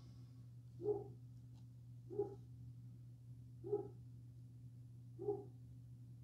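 A dog barking: four single barks, evenly spaced about a second and a half apart, over a steady low hum.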